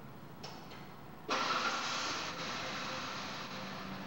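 A machine starts up suddenly about a second in and keeps running with a steady rushing noise and a faint whine, easing off slightly.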